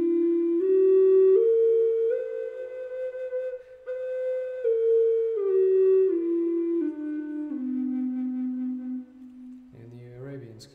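Six-hole Native American style flute of Alaskan yellow cedar, keyed to low C and tuned to 432 Hz, playing a pentatonic scale. It steps up one note at a time to the octave, holds the top, then steps back down and holds the low C until it stops near the end.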